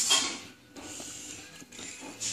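Plastic Lego pieces being pressed together and handled: a sharp click at the start, then faint rustling and small clicks of plastic.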